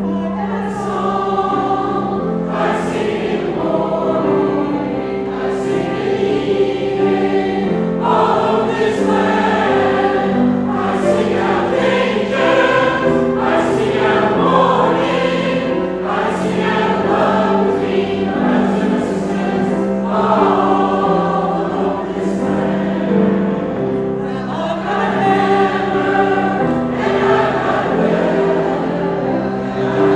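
Mixed choir of men's and women's voices singing in harmony, moving through a succession of held chords without a break.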